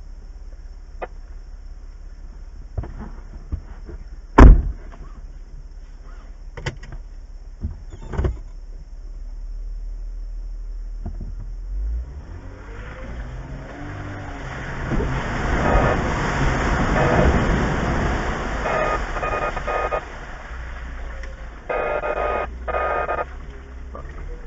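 A sharp knock about four seconds in and a few lighter clicks, then a vehicle engine rising in pitch and running loudly for several seconds before easing off, with a couple of short bursts near the end.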